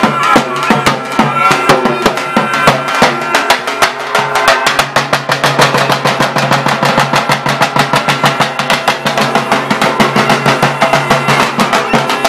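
Albanian lodra (large double-headed bass drum) beaten with a stick in a fast, steady dance rhythm, with a sustained pitched melody playing over the beat.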